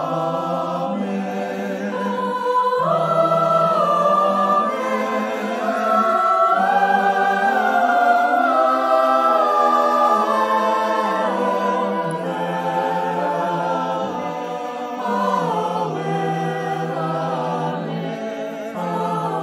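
Mixed choir of men's and women's voices singing a slow, drawn-out "Amen". It is recorded as a virtual choir, each singer separately. The chords are held for several seconds each and change pitch, swelling toward the middle and easing off near the end.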